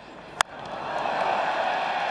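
Cricket bat striking the ball with a single sharp crack, followed by a stadium crowd cheering, the noise swelling within a second and then holding steady as the ball is hit for six.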